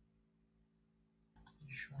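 Near silence: room tone, broken about a second and a half in by a few faint clicks just before a man starts to speak.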